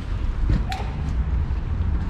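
Steady low outdoor rumble, with a single sharp knock and click about half a second in.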